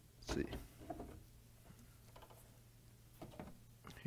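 A few faint, brief knocks and clicks from a plastic coil housing's back cover being worked loose and lifted off.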